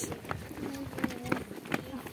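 Footsteps of a group walking on a stony dirt path, with faint chatter of voices in the background.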